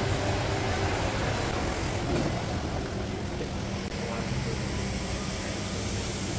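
Steady background noise of a large indoor hall: an even rush with a low hum and faint voices in the distance.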